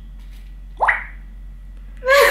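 Smartphone notification tone played from the phone's speaker: one short 'buć' that glides quickly upward in pitch, about a second in.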